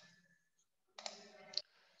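Faint short clicks, one about a second in and a sharper one half a second later, with a soft low murmur between them; otherwise near silence.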